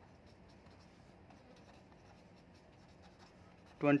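Faint scratching of a pen writing figures on paper clipped to a board, in short separate strokes.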